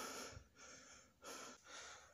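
Faint heavy breathing: a person panting out of breath, about four short breaths.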